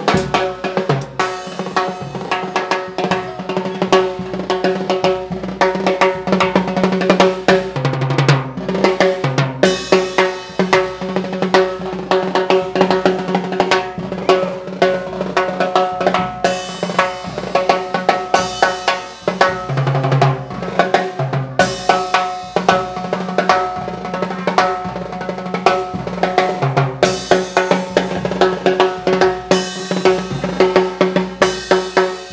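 Live brass band with a heavy percussion section: a big bass drum pounding, timbales with cowbell and block and cymbal crashes driving a fast, busy rhythm, while the horns hold sustained notes underneath.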